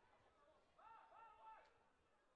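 Near silence: faint ambience of a football match from the pitch-side microphones, with two faint short calls, each rising then falling, a little under a second in.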